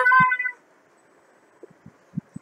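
A child's high-pitched voice holding a wavering, meow-like note that stops about half a second in, followed by quiet with a few faint soft taps near the end.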